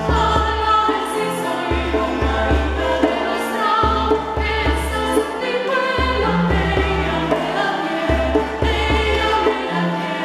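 Mixed choir singing a song in parts, accompanied by violins and a plucked string instrument, with sustained low notes changing in steps beneath the voices.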